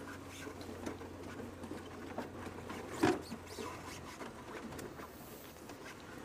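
Low steady hum of a game-drive vehicle moving slowly, with scattered faint scrapes and clicks and one louder knock about three seconds in; the hum fades out near the end.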